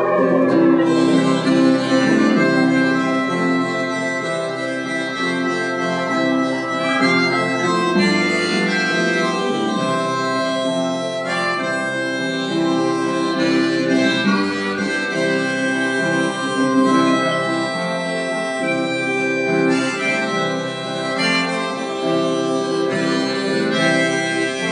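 Instrumental break of a live folk song: sustained chords with a melody line over them and no singing.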